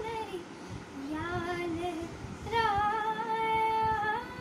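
A young girl singing a Hindi song unaccompanied: a short phrase with a wavering ornament about a second in, then a long held note from halfway through to the end.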